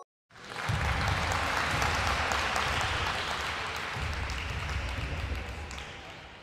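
Crowd applause sound effect: a dense clatter of clapping that starts just after the opening, holds steady, and fades away near the end.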